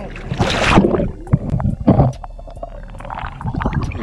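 A person plunging under river water: a loud splash about half a second in, then irregular churning and sloshing splashes as he comes back up.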